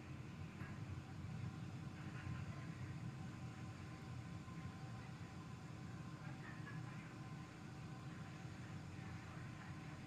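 Faint steady low rumble and hiss with a few faint steady tones: background noise of the broadcast audio feed, with no distinct event.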